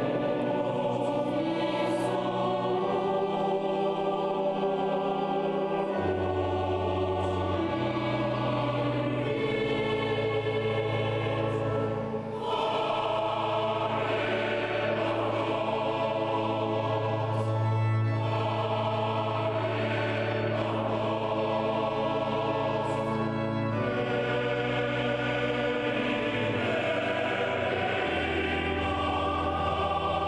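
Large mixed choir singing slow, sustained chords, with long low bass notes held underneath. The sound dips briefly between phrases about twelve seconds in.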